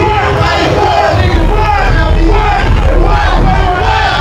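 Live hip-hop performance through a club PA: rappers shouting lyrics into microphones over a loud, bass-heavy beat, with the crowd yelling along. The deep bass gets heavier about a second in.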